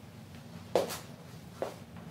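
Handling noise: two brief knocks, the first a little under a second in and the second just over half a second later, over a low steady background.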